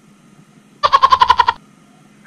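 A woman's short, high-pitched laugh, a quick run of pulses lasting under a second, starting about a second in.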